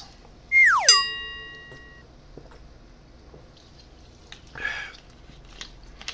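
A falling whistle-like tone about half a second in that rings on for about a second. Near the end comes a short, soft hiss from a drink of sparkling water.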